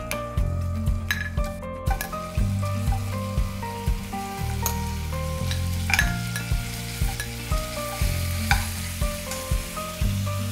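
Chunks of pre-cooked mutton sizzling and frying as they are spooned into hot olive oil in a stainless steel pan to brown. A few sharp clinks of the steel spoon against the bowl and pan come through, one about six seconds in and another about eight and a half seconds in.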